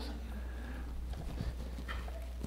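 A quiet pause: a steady low electrical hum under faint room tone, with a few faint small knocks about halfway through.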